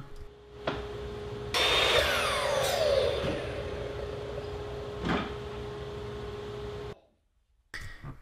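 Miter saw cutting a piece of pine: a sudden loud cut about one and a half seconds in, then the blade's whine falling steadily as it winds down. A steady machine hum runs underneath and stops abruptly near the end.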